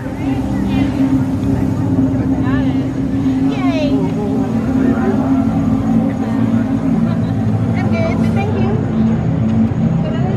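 A steady, loud low drone, typical of a scare zone's ominous ambient soundtrack played over loudspeakers. Over it come crowd voices and a few short wavering vocal cries, around a third of the way in and again near the end.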